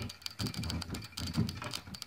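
Hand-cranked brushless washing-machine motor, run as an AC generator, turning with fast irregular clicking and knocking; shorting its thin output wires makes the rotor clang on its magnets.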